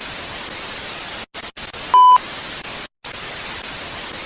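Television static hiss, broken by a few brief dropouts to silence, with a short steady test-card beep about two seconds in.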